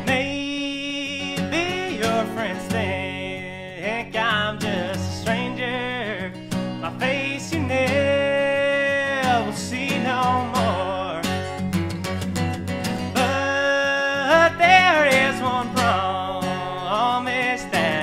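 Steel-string acoustic guitar strummed under a man singing an old-time melody with long held, sliding notes.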